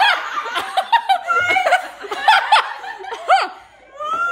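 A group of girls and women laughing hard in rapid, high-pitched bursts, dying away near the end.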